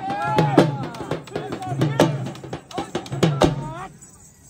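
Dhol drumming in a strong, uneven beat with a singing voice over it, its notes bending and held, the music played for a dancing horse.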